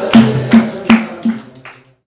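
Rhythmic group hand-clapping with percussion keeping time to a devotional menzuma chant, a little under three beats a second over a low held tone. The beat fades out near the end.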